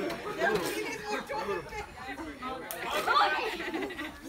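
Chatter of several people talking and calling out over one another.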